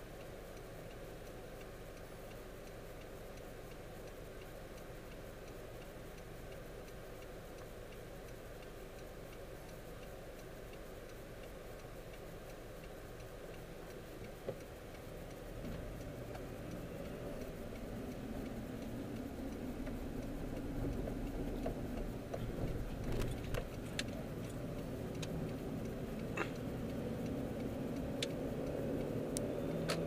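Car cabin noise: a low, steady engine idle while stopped in traffic, then from about halfway the engine and road noise grow as the car pulls away and picks up speed. A few sharp clicks come near the end.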